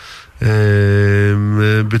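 A man's voice holding one long hesitation sound, a drawn-out "ehhh" at a level pitch, for about a second and a half, starting about half a second in.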